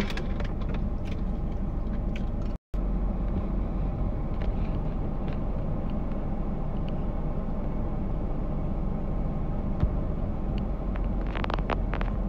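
Steady low car engine and traffic rumble heard from inside a car, broken by a brief drop-out about two and a half seconds in. A short higher-pitched sound comes near the end.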